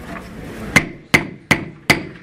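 Gavel rapping four times in quick, even succession, about two and a half strikes a second, starting just under a second in: the gavel calling the meeting to order.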